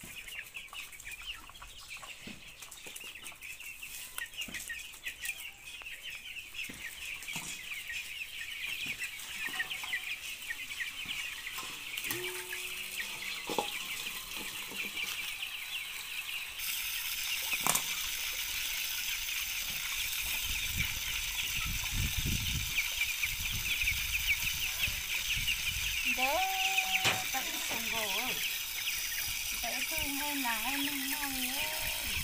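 Chickens clucking over a dense, steady high chirping. About halfway through, an outdoor water tap comes on with a sudden hiss and keeps running, splashing into a metal bowl as things are washed in it.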